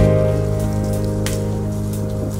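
Saxophone music holding one long, steady low note.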